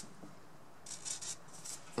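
Felt-tip permanent marker drawn across the side of a wooden post: a few short, faint strokes in quick succession, about a second in.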